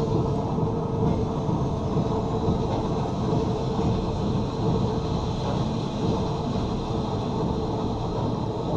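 Steady low rumble of a dark-ride car running along its track, with a faint constant hum over it.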